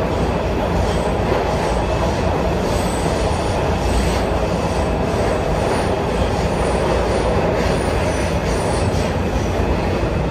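Breda 3000-series Metrorail subway car running between stations, heard from inside: a steady, loud rumble of wheels on rail with a faint click now and then.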